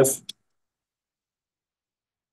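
The end of a man's spoken word, cut off sharply about a third of a second in, then dead silence.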